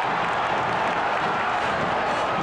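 Steady crowd noise from the stands of a football stadium, an even wash of many voices and clapping with no single sound standing out.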